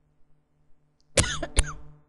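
A woman coughing twice, about a second in, the two coughs half a second apart; she is getting over a cold.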